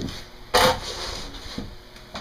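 Wooden engine cover being pulled off and handled, with one sharp wooden knock about half a second in.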